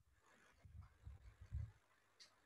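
Near silence, broken by a few soft low thumps and faint scratches from a stylus writing on a pen tablet; the loudest thump comes near the end.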